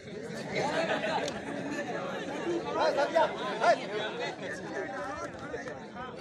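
Crowd of spectators chattering and calling out, many voices overlapping at once, with a laugh near the end.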